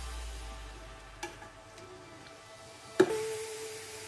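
Quiet background music, with a single sharp clink about three seconds in as a metal whisk is set down in a glass baking dish of milk sauce.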